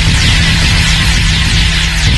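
Loud, steady electronic hum with a dense hiss over it and repeated falling sweeps, a synthesized sound effect for an animated graphic.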